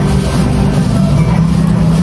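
Background music carried by sustained low bass notes that step to a new pitch a couple of times.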